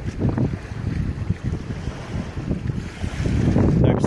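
Wind buffeting the microphone, an uneven low rumble that gusts stronger toward the end.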